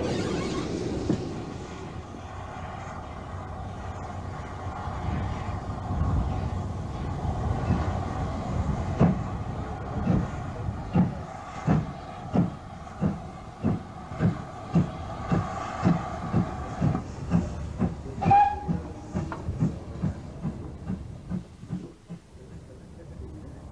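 A train running past, its wheels clacking over the rail joints in a steady rhythm of about two beats a second, from roughly nine seconds in until near the end. A short high note sounds briefly near the end.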